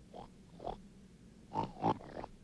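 Short animal-like grunts voiced for a stop-motion sand creature, four in quick succession, the last two near the end the loudest.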